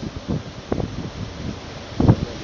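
Pause in speech: steady hissing room noise, with a brief soft sound about three-quarters of a second in.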